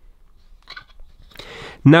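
Faint handling of the fan's plastic housing: a few soft clicks a little under a second in, then a short rustle just before speech begins.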